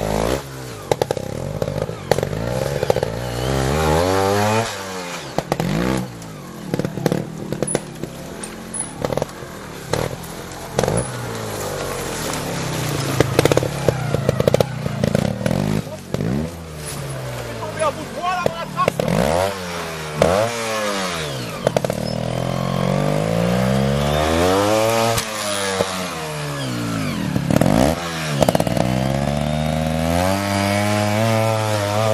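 Trials motorcycle engine revved in repeated short throttle blips, its pitch rising and falling every second or two, with scattered sharp knocks.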